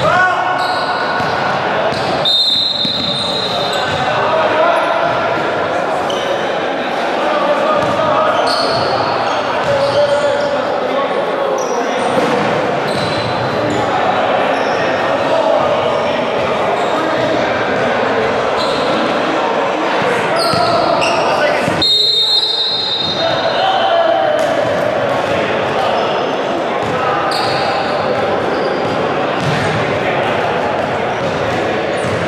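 Basketballs bouncing on a hardwood gym floor amid the bustle of a live game, echoing around a large indoor hall. Voices of players and onlookers mix in throughout, and two brief high-pitched sounds come about two seconds in and again near the end.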